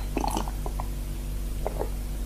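A person drinking from a glass: a few short, quiet gulping and swallowing sounds in two clusters, near the start and near the end, over a steady low hum from the old recording.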